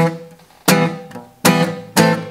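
Cutaway acoustic guitar strummed in a rhythm with a hard attack: four sharp strokes of a chord about two-thirds of a second apart, each ringing briefly and fading before the next.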